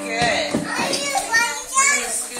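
Young children's voices chattering and calling out, high-pitched, with a shrill squeal near the end.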